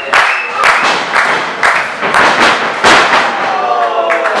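Wrestling crowd clapping in a steady beat, about two claps a second, with voices calling out over it; near the end one voice is drawn out, falling in pitch.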